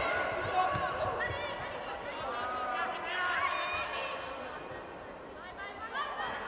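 Voices calling and shouting in an indoor arena during a judo bout. Occasional dull thumps of feet and bodies landing on the tatami come through under them, one near the end as a player is turned onto the mat.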